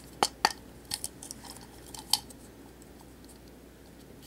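Sharp clicks and taps of hard plastic as a hollow action-figure torso piece is handled and a small part is worked into it: two close clicks just after the start, a few lighter ones around a second in, and one more about two seconds in.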